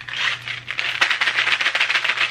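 Small chocolate candies rattling inside a tube of Meiji Coffee Beat as it is shaken: a loud, dense, rapid clatter of many tiny clicks.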